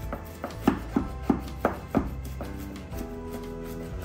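Chef's knife chopping fresh cilantro on a bamboo cutting board: sharp knocks of the blade on the wood, about three a second for the first two seconds, then fewer.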